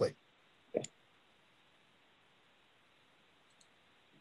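A few short clicks in otherwise quiet line noise: one sharper click about a second in and faint ones near the end, like computer mouse clicks while a shared document is handled.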